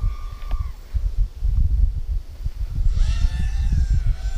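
Wind buffeting an outdoor microphone: a gusty low rumble throughout. A steady tone cuts off about half a second in, and a short pitched call-like sound rises and then holds near the end.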